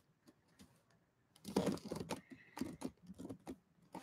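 Quiet, irregular light clicks and rustles of close handling: a quick cluster about a second and a half in, then a few scattered single clicks.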